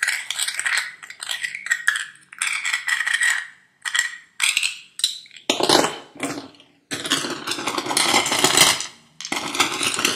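Seashells clattering and rattling against one another as they are handled, in a run of bursts with short pauses; the fullest and loudest stretches come just after the middle and again from about seven to nine seconds in.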